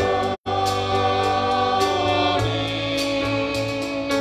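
Church choir singing sustained notes with instrumental accompaniment. The sound cuts out completely for an instant about half a second in.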